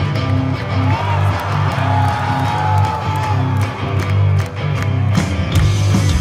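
Live punk rock band playing loud through the PA: electric guitar and a repeated bass line, with a crowd cheering.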